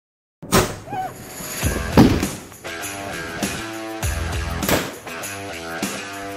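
Music that starts suddenly about half a second in, with loud percussive hits every second or so over changing sustained pitched notes.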